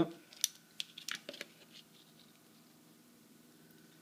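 Handling noise as a plastic battery box and alligator-clip leads are picked up and connected to power a small circuit: a handful of short sharp clicks and scrapes in the first second and a half, then only a faint steady hum.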